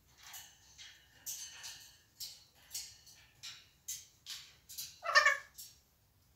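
African grey parrot vocalising: a run of short, high, hissy calls about two a second, then a louder, lower call about five seconds in.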